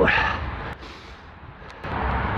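Wind buffeting the microphone while riding a road bike, with tyre and road noise: a low rumble that eases off through the middle and picks up again near the end, with a couple of faint clicks.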